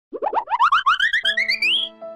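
Cartoon-style comedy sound effect: a fast run of short rising chirps, about ten a second, climbing steadily in pitch through almost two seconds, with held music notes coming in about halfway.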